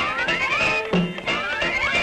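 Cartoon orchestral score with two rising, whining glides about a second apart, a comic sound effect for the winded horse.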